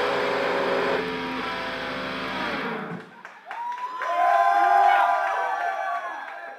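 A heavy metal band's amplified guitars and drums ending a song: the final chord rings on, fades and cuts off about three seconds in. Then a few voices whoop and cheer.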